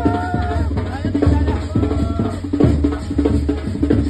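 Band music: a trumpet holds a few melody notes over loud, busy drumming and a continuous bass beat.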